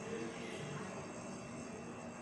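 Low, steady background noise with no distinct event, only faint, indistinct traces of sound near the start.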